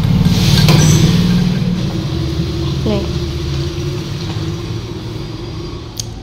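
A low, steady engine-like rumble with a rapid even pulse, fading gradually, with a single word spoken about three seconds in.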